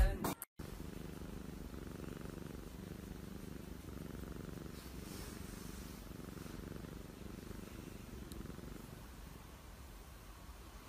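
Domestic cat purring while its head is stroked: a low, steady rumble that pulses faintly with each breath. A burst of music cuts off just before the purring starts.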